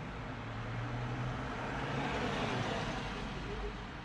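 Road traffic heard from inside a stationary car: a vehicle passing by, its noise swelling to a peak midway and fading again over a low steady hum.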